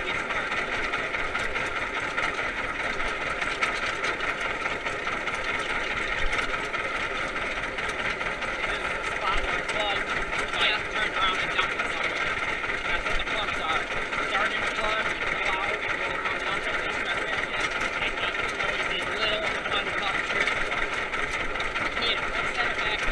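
Vintage tractor engine running steadily while driving along under way.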